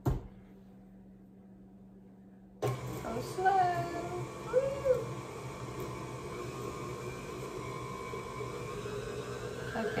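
KitchenAid stand mixer switched on about two and a half seconds in and then running steadily at low speed, its beater working flour into peanut butter cookie dough. A sharp click comes right at the start.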